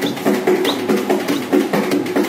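Dholak, a two-headed barrel hand drum, played by hand in a fast, steady rhythm of repeated strokes.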